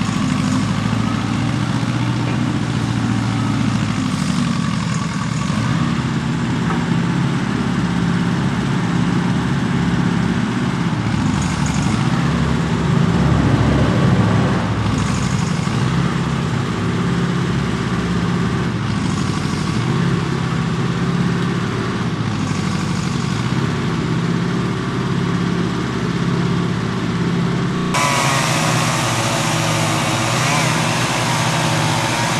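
Tractor engine running steadily at low revs, rising a little for a few seconds around the middle. Near the end the sound changes abruptly and more hiss comes in over the engine.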